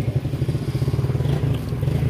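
A small engine running steadily at idle, with a rapid low pulsing.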